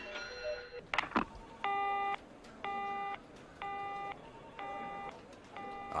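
Telephone busy tone in the handset after the other end hangs up: a low beep about half a second long, repeating about once a second, five times, after a brief click about a second in.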